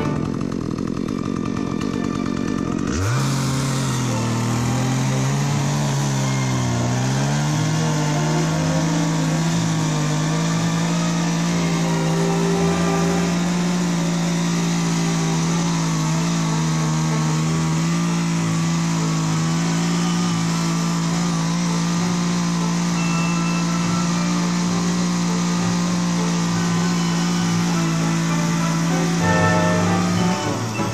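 A two-stroke chainsaw starts revving about three seconds in. Its pitch climbs and wavers for a few seconds, then holds steady at high revs until it cuts off at the very end. Background music plays before it starts.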